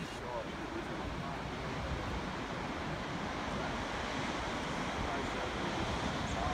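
Steady wind rumbling on the microphone, with the wash of ocean surf breaking on the beach below.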